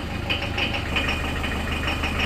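Old Mercedes-Benz Unimog's diesel engine idling steadily.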